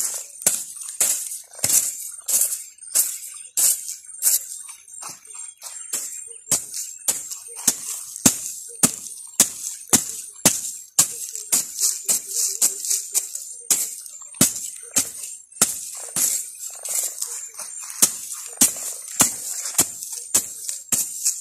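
Long-handled hoe scraping and chopping through dry, wood-chip-mulched soil in quick repeated strokes, about two to three a second, each a short gritty rasp.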